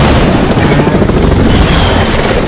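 Loud, sustained booming and crashing rumble of trailer action sound effects, dense and heavy in the bass, mixed with music.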